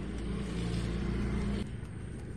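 A low, steady engine hum from an unseen motor vehicle that cuts off suddenly about a second and a half in.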